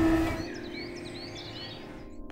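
Background music fading out within the first half second, then several short bird chirps over a faint, steady outdoor ambience.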